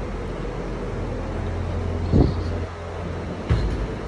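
Steady low rumble of outdoor street noise, with two dull thumps, one about two seconds in and one near the end.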